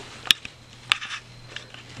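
Two sharp clicks a little over half a second apart, then a fainter one, over faint room hiss: handling noise from the handheld camera as it is moved.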